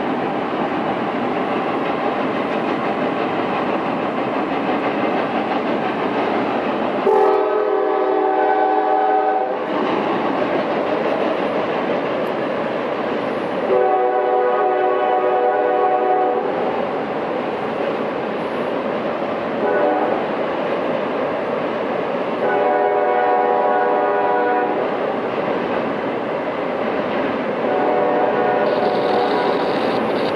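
A Norfolk Southern intermodal freight train's diesel locomotive horn sounds five times: long, long, short, long, the grade-crossing signal, then one more long blast near the end. Under it runs the steady rumble of the train rolling across a steel truss bridge.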